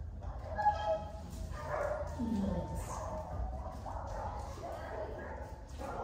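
A dog whining and yipping in short, high-pitched cries.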